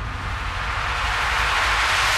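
Television title-sequence sound effect: a deep rumble under a whooshing rush of noise that swells steadily louder.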